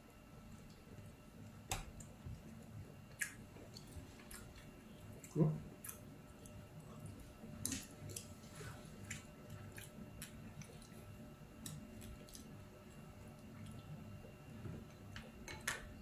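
A person quietly chewing a mouthful of soft bread bun, with faint wet mouth clicks scattered throughout and a short hum about five seconds in.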